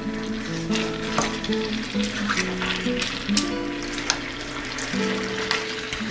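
Pork chops sizzling in a little hot water in a stainless steel pan, with a metal spoon clinking and scraping as it stirs them. Background music with long held notes plays under it.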